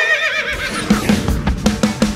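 A horse's whinny sound effect, wavering in pitch and fading over about the first second. Rock music with a steady drum beat comes in under it about half a second in.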